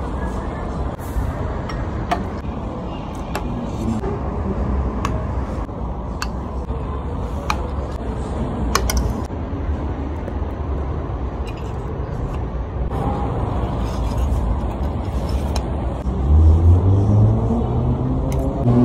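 Steady low outdoor rumble, like street traffic, with scattered sharp light clicks. Near the end the sound grows louder with a rising engine-like note.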